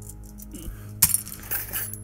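Small metal hand tools clinking as a folding multi-tool is handled and lifted from a metal tool case. There is one sharp clink about a second in, then a few lighter clinks, over steady background music.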